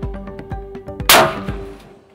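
A single muzzleloader rifle shot about a second in, sudden and loud and ringing away over about half a second, over background music with a beat that fades out near the end.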